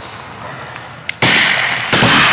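A shotgun shot a little over a second in: a sudden loud blast with a noisy tail that lingers. A few faint crackles come before it.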